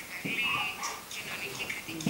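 Faint, thin voices in a pause in a man's talk.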